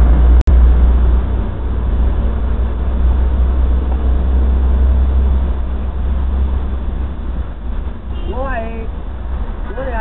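A loud, steady low rumble of outdoor street noise, with a woman's voice heard briefly near the end.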